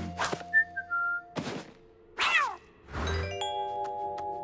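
Cartoon soundtrack of music and sound effects: short swishes, three short whistled notes stepping downward, a quick falling whistle slide, then a held musical chord with an even ticking beginning about three seconds in.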